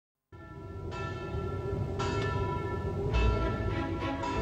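A bell struck three times, about a second apart, each stroke ringing on over a low hum.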